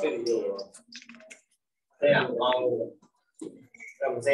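Speech in two short stretches, with a few light clicks between them.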